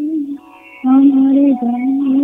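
A woman singing a Bengali modern song, holding a note that fades out, then coming back in loudly on a new, long held note about a second in.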